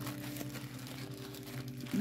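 Plastic decal packets and foil sheets crinkling as they are handled, over faint steady low tones.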